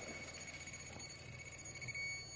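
Radiation detectors in alarm mode giving a faint, steady high-pitched tone over a low hiss: the alarm of meters held over heavily contaminated clothing.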